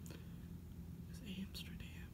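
A woman whispering softly: a few faint, hissy whispered syllables about a second in.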